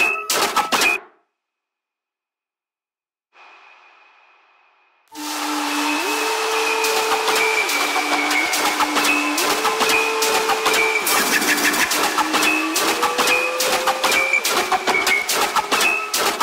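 Dubstep track playing back from the production software: dense, sharp drum hits over a synth bass line that steps back and forth between two pitches. It stops about a second in, a faint held tone fades in and out around three to five seconds, and the full loop starts again at about five seconds.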